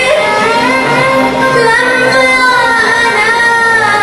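A young woman singing an Arabic song live into a microphone, long held notes sliding in pitch, over steady instrumental accompaniment.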